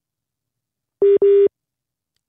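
Two short electronic beeps at the same steady pitch, one right after the other, about a second in.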